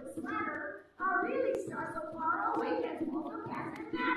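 Speech: a storyteller's voice speaking, with a short pause about a second in.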